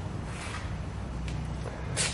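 Steady low hum with a faint hiss of background noise, with no distinct event.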